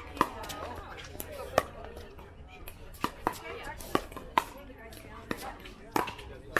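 Pickleball paddles striking a plastic pickleball during a rally: a series of sharp, short pops, the two loudest in the first two seconds and a quicker run of hits around the middle.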